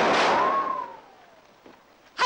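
A revolver shot, sudden and loud, with a ricochet whine that rises and then falls away as the blast fades over about a second: the bullet narrowly misses its target.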